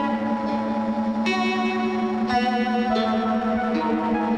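Band playing the instrumental opening of a song, without vocals: guitar and keyboard chords with echo over a steady low held note. New chords come in about a second in and again a second later.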